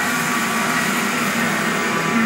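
A steady drone: several held tones over a bed of noise, even in level throughout.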